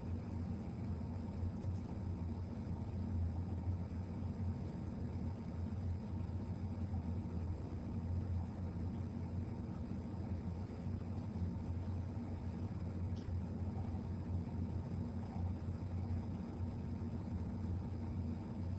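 Steady low room hum, an even background rumble with no speech, and a faint tick near the middle.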